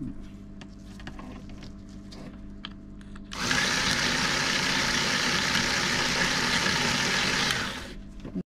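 The electric handbrake actuator motor from a Range Rover L405 rear brake caliper, opened up and run on the bench, whirring steadily as it drives its belt and gears. It starts about three and a half seconds in and stops near the end. It spins freely, but water has got into the actuator, and it is doubted to have enough power to work under load.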